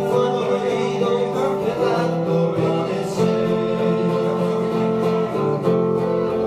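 Acoustic guitar playing an instrumental passage of a slow ballad without singing, its notes changing every second or two.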